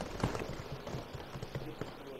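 Papers and small objects being handled at a desk microphone: faint, irregular light taps and rustles.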